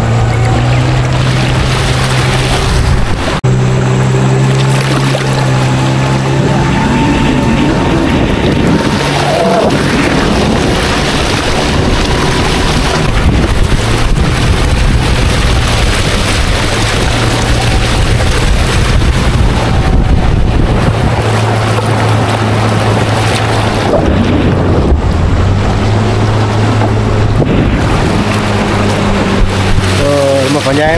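Motorboat engine running steadily under way, its pitch dropping and picking up again a few times, over a rush of wind and water.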